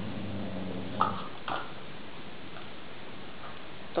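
Dogs playing roughly on a sofa: a low growl for about the first second, then two short sharp sounds close together.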